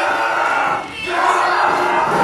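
A voice yelling loudly in two long, drawn-out shouts, with a short break between them about a second in.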